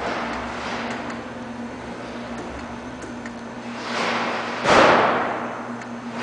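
REXA electraulic actuator's servo motor and hydraulic pump whirring in surges as the actuator answers small set-point changes. There is a brief surge at the start and a longer, louder one about four to five seconds in, over a steady electrical hum.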